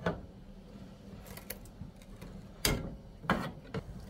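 Spatula scooping thick stew and knocking against the sides of a stainless steel pot: a few scattered knocks and scrapes, the loudest about two and a half seconds in.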